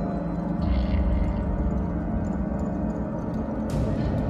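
Slow, dark instrumental music for a dance solo, built on low sustained tones, with a brief swell about a second in and a short hiss near the end.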